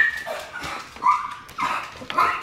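A pet dog barking in short, high yips, about four of them roughly half a second apart.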